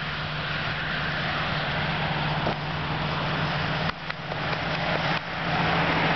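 Motor vehicle noise: an engine running with a steady low hum under a haze of road noise, dipping briefly about four seconds in and growing louder about a second later.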